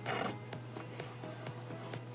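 A brief rustling rub in the first quarter second as hands pull a knot of embroidery floss tight and brush the cardboard work surface, under quiet background music.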